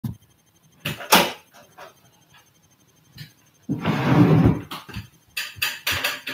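Handling noise from someone moving about right at the microphone: a couple of sharp knocks about a second in, a longer rustle a little before four seconds in, and a quick run of clicks and knocks near the end.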